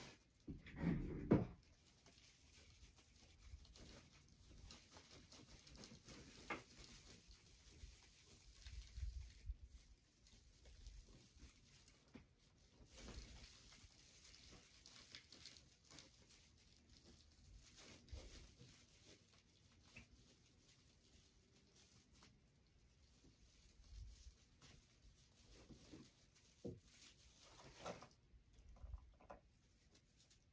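Faint, intermittent rustling and crinkling of wired ribbon and mesh being handled and worked into a swag, with a louder rustle about a second in.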